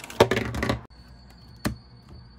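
Clear plastic packaging crinkling and clicking as a small camera accessory is handled. After a cut comes a single sharp click at the Sony Alpha 6000's open battery compartment, over a faint steady high whine.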